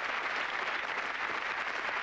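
Studio audience applauding, a steady even clatter of many hands clapping.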